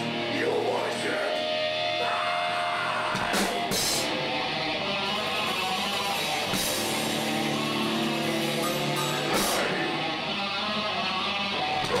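Heavy metal band playing live: electric guitars over a drum kit, with sharp cymbal crashes about three to four seconds in and again around nine seconds.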